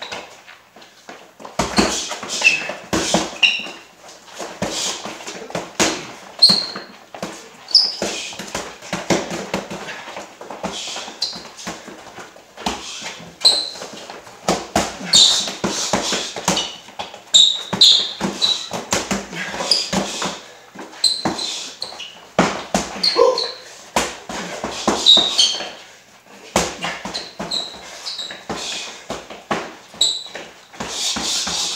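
Boxing gloves landing in quick, irregular clusters of punches during sparring, mixed with short high squeaks of sneakers on the gym floor as the boxers move.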